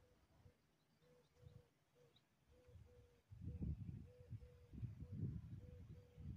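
Near silence, with a faint short low note repeating every half second or so. From about halfway in come low, gusty rumbles of wind on the microphone.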